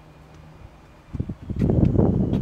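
Wind buffeting the microphone: quiet at first, then a dense, irregular low rumble that rises about a second in and keeps going loudly.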